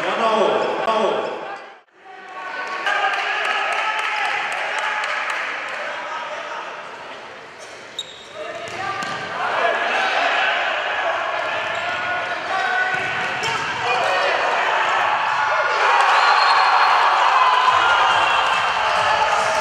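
Futsal match sound in a sports hall: a ball being kicked and bouncing off the wooden floor, with voices over a background of spectators. There is a sharp knock about eight seconds in. The sound cuts out almost completely for a moment about two seconds in.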